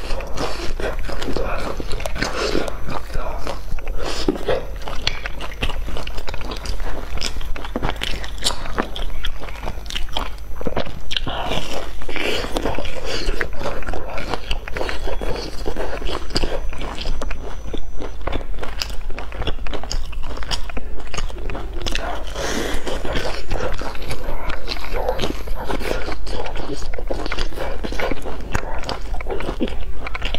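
Close-miked biting and chewing of crisp-crusted fried filled cakes: a dense run of crunches and mouth sounds throughout.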